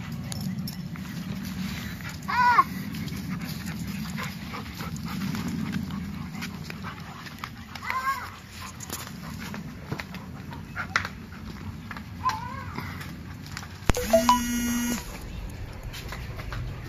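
An Akita giving short, high, rising-and-falling calls, three times a few seconds apart, over scattered clicks and a low rumble. Near the end a loud steady tone sounds for about a second.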